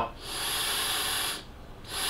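Two draws of air through a Horizon Tech Arctic Turbo vape tank and its built-in turbo fan, heard as a hiss with a thin high whine on top. The first lasts about a second and the second starts near the end. The fan is still dry and runs noisier until e-liquid lubricates it.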